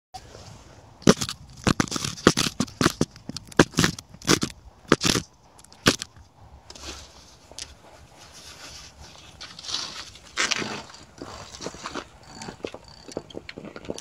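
Handling noise from a camera being held and set down: a string of sharp knocks and scrapes on the microphone for the first five seconds or so, then quieter rustling and scuffing with a few weaker knocks.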